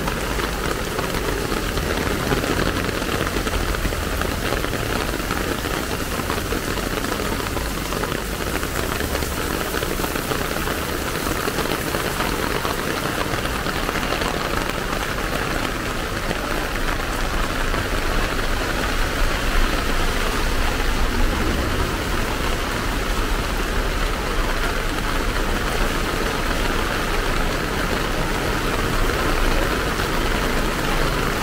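Heavy rain falling steadily on a paved street and wet pavement, a downpour under an amber rainstorm signal, with vehicles passing on the wet road.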